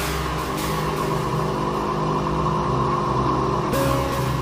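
Electronic background music: a sustained droning chord with a noisy whooshing swell that sweeps down in pitch; a new swell and a fresh tone come in near the end.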